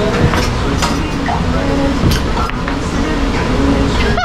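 Busy rooftop bar ambience: a steady low rumble with scattered fragments of other people's voices in the background.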